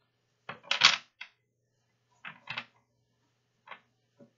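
A deck of oracle cards being shuffled by hand: a run of short papery card flicks and riffles, the loudest just under a second in, then a few softer ones.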